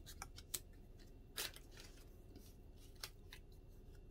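Die-cut paper tags being handled and laid down on a cutting mat: faint scattered rustles and light clicks, the loudest about a second and a half in.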